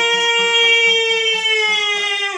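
A male voice holds one long high note of an Albanian folk song. Underneath it, çifteli and sharki lutes are strummed in a steady pulse of about four strokes a second, with an accordion in the group.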